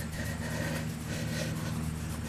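A steady low mechanical hum from a running motor or engine.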